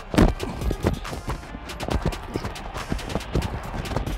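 Quick, irregular thumps and clatter of a football player running in cleats and pads, picked up close by the body mic he wears, with music underneath.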